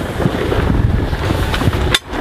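Wind buffeting the microphone: a steady, uneven low rumble, with one sharp click near the end.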